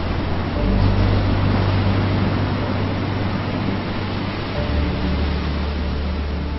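Ocean surf washing over a beach, under a low sustained musical drone whose bass notes shift about half a second in and again near five seconds.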